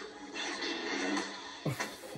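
Film soundtrack played from a television into a small room: music with lightsaber sound effects. A sharp swing or hit comes near the end.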